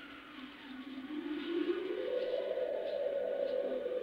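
Soft background score from the cartoon's soundtrack: a sustained drone-like tone that rises in pitch over the first couple of seconds and then holds steady.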